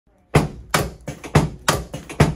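A rapid series of sharp thumps, about three a second, from a chiropractor's stacked hands pushing rhythmically on a patient's upper back as she lies on a padded chiropractic table.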